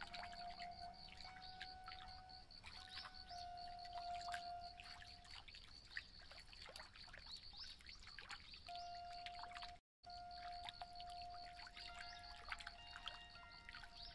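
Electric zither (an amplified autoharp) struck and plucked with the fingertips: quiet, shimmering runs of short ringing notes over a few held tones. The sound drops out briefly about ten seconds in.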